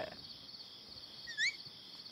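Crickets chirping in a steady, high trill, with a single short rising chirp, whistle-like, about one and a half seconds in.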